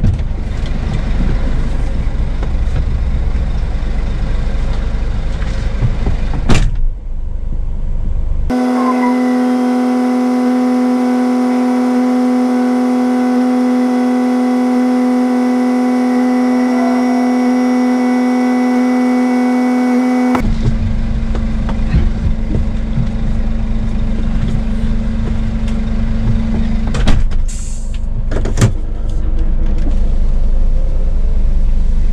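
Scania S500 truck engine idling steadily while the truck stands at the gate. For about twelve seconds in the middle, the idle rumble gives way to a steady, even hum, and it returns abruptly after that; a few sharp clicks come near the end.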